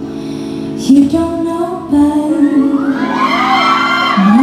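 A live band playing a slow R&B ballad, with sustained electric guitar and keyboard chords under a woman's singing voice. Near the end, a few whoops and cheers come from the audience.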